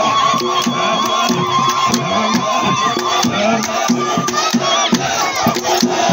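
A group of dancers chanting in rhythm to steady, sharp hand claps. A high, wavering call is held over the chant and stops about four and a half seconds in.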